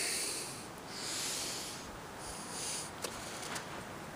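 A man breathing close to the microphone, about three soft breaths a second or so apart.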